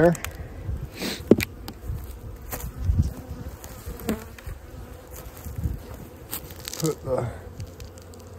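Honeybees buzzing steadily around an open hive, with scattered knocks and clicks as hive equipment is handled.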